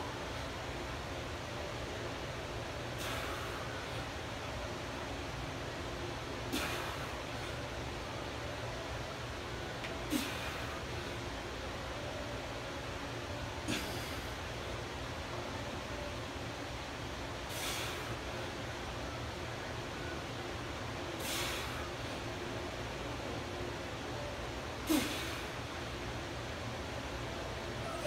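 A weightlifter's sharp breaths during a set of barbell back squats under 180 lb, one roughly every three and a half seconds with each rep, some with a short grunt, over steady low room noise.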